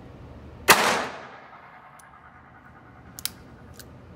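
A single shot from a Beretta 950B Minx .22 Short pocket pistol about a second in, a sharp crack with a short echoing tail off the indoor range walls. Lighter sharp clicks follow near the end.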